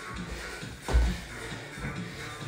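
Shuffling and thuds of a person doing burpees on a wooden floor, with one heavy thud about a second in, over background music.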